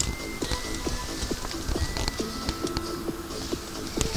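Footsteps on rocks, wet gravel and leaf litter in a creek bed: a run of short irregular clicks and scuffs. Several brief faint high whistled tones sound in the background.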